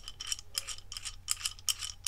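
Small, uneven clicks and ticks of the Topeak Solo Bike Holder's aluminium hook arm and its fittings as they are handled and unscrewed by hand, several light clicks a second.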